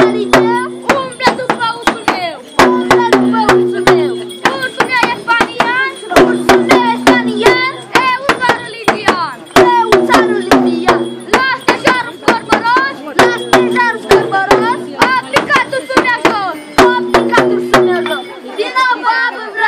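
Large hand drums of a New Year bear-dance troupe beating a fast, uneven rhythm. Over the beat, a low held tone comes back in stretches of about a second and a half, every three to four seconds, and high wavering calls run through it.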